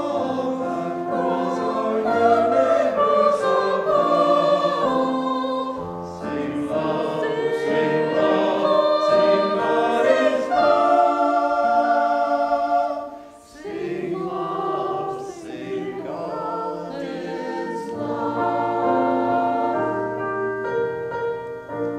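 Small mixed church choir of men's and women's voices singing in parts, with a brief break between phrases about halfway through.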